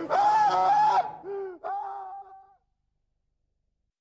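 A man's voice giving drawn-out vocal cries without words: one held for about a second, then two shorter ones, the first falling in pitch, stopping about two and a half seconds in.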